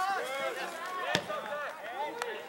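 A soccer ball struck once with a sharp thud about a second in, amid repeated shouts from players on the field.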